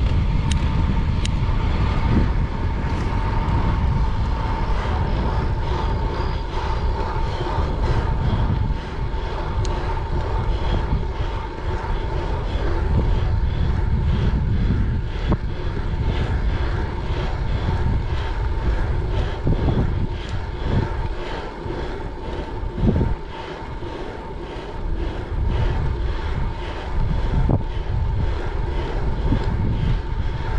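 Wind rushing over the camera microphone of a time-trial bicycle ridden on asphalt, mixed with tyre noise on the road, with a faint steady whine underneath.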